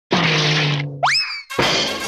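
Intro sound effects for an animated logo: a burst of noise over a low held tone, then a quick rising boing-like glide about a second in, then a loud hit that launches music near the end.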